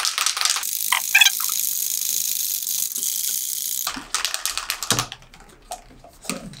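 Aerosol spray paint cans being shaken, the mixing balls rattling rapidly. About half a second in the rattling stops and a steady aerosol hiss runs for about three seconds, then cuts off, followed by a few light clicks and a knock.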